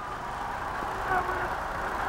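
Steady arena crowd noise, with a faint voice about a second in.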